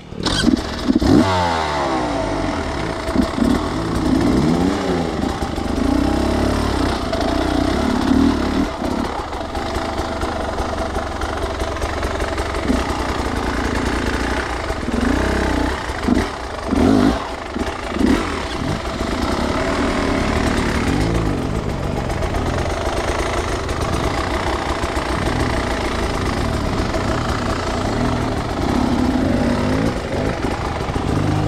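Enduro motorcycle engine coming in loud at the start, then running and revving up and down over and over as the throttle is worked on a steep rock climb.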